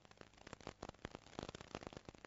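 Faint, irregular crackling: many small sharp clicks a second, thickest in the second half, over a low steady hum.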